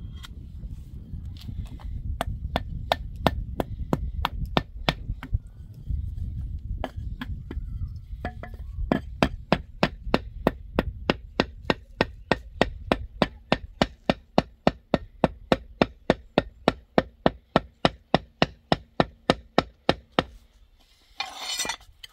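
Ceramic tile pieces tapped over and over with a wooden-handled hammer, bedding them into wet mortar: sharp knocks, scattered at first, then a steady run of about three a second that stops shortly before a brief scrape near the end.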